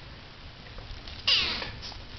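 Silver spotted tabby kitten giving a single short, high meow that falls in pitch, a little after a second in.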